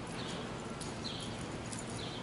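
Quarter Horse gelding loping on dirt arena footing: soft hoofbeats that recur in a steady rhythm, one stride a little under a second apart.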